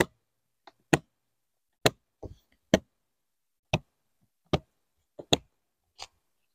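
Plastic snap latches on a hard equipment case being flipped open one after another: about eight sharp clicks, roughly one a second, some in quick pairs.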